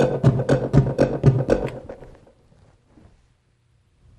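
Gated synth preset from Logic Pro 8's software instrument library: rapid pulses at a steady pitch, about four a second, dying away about two seconds in.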